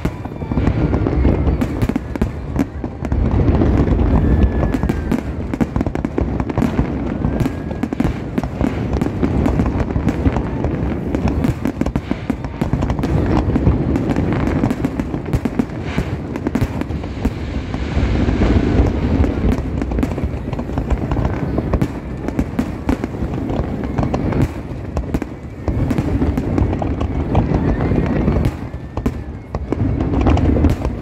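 Large fireworks display: a continuous barrage of rapid bangs and crackling with deep booms, never pausing.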